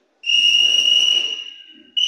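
Referee's whistle: one long, steady, high-pitched blast of about a second and a half, with a second blast starting at the very end, calling on the judges to show their decision.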